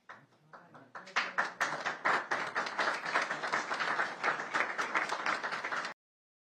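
Audience applauding: a few scattered claps that build into steady applause about a second in, then cut off suddenly near the end.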